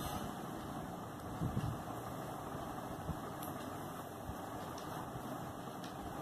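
Steady low background hum of the room, with faint pen-on-paper scratches as writing and underlining go on. A brief, soft low sound comes about one and a half seconds in.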